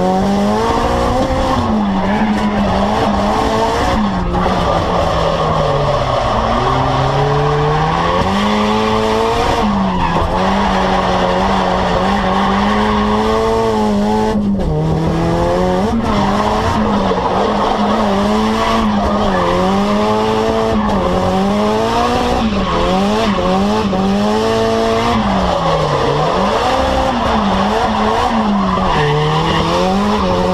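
Drift car's engine held high in the rev range, its pitch swinging up and down again and again as the throttle is worked through the slides, with tyres squealing, heard from inside the cabin.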